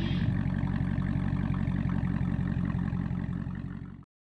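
The 5.7-litre Hemi V8 of a 2016 Dodge Challenger R/T Plus Shaker, with its muffler and resonator deleted, idling steadily and fading out near the end.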